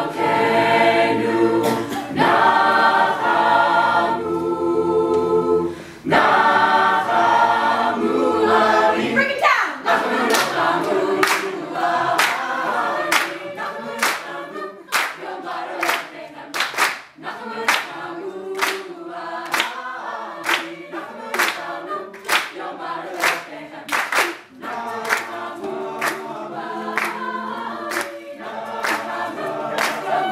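A large mixed-voice a cappella group singing in sustained chords. From about ten seconds in, a steady beat of hand claps, roughly two a second, runs under the singing.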